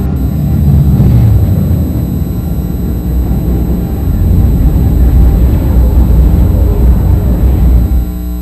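A loud, deep rumble with no clear tune, swelling twice and cutting off suddenly at the end.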